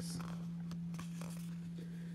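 Cardboard trading cards sliding against each other as the front card of a hand-held stack is moved to the back: a faint, short rustle near the start and fainter scrapes after it. A steady low hum runs underneath.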